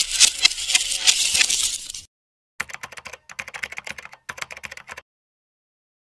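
Keyboard-typing sound effect: a rapid run of key clicks for about two seconds, a short break, then quieter, sparser clicks for about two seconds more.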